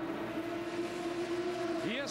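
A racing car engine holding one steady note over the general din of the pit lane, with a man's voice starting right at the end.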